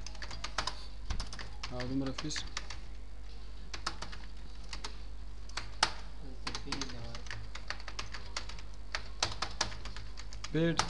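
Computer keyboard typing: irregular runs of key clicks as text is entered, over a steady low hum.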